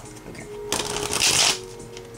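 Tarot cards being shuffled: a brief rustle lasting under a second, with soft background music underneath.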